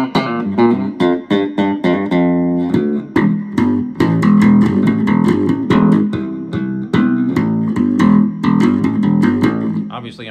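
Squier Vintage Modified Jaguar Bass Special SS short-scale electric bass playing a quick, busy funk-style line of plucked notes on its rear pickup alone, for a brighter tone.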